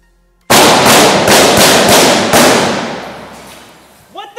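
A rapid string of about seven loud gunshots fired at an armored Range Rover Sport's windshield, starting half a second in, with a long echo fading out over the next second and a half.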